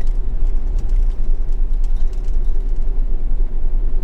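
Steady low rumble of a camper van cruising along a paved road, heard from inside the cab: engine and tyre noise with no change in pace.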